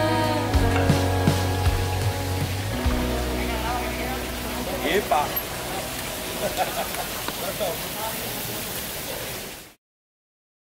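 A Basque-language background song fades out over the first three seconds, giving way to open-air ambience of a town square with people's voices. All sound cuts off just before the end.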